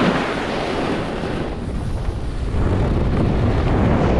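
Wind rushing over a moving camera's microphone at speed, mixed with the hiss and scrape of snowboard edges on groomed snow. It eases slightly around the middle and builds again in the second half.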